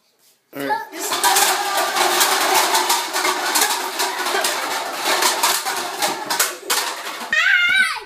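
A tall pyramid of plastic cups collapsing onto a tabletop, starting suddenly about half a second in with a long clatter of many light plastic clicks, mixed with children's voices.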